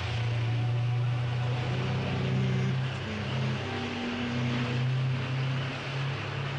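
A motor vehicle's engine running steadily, its low hum stepping up and down in pitch as it drives.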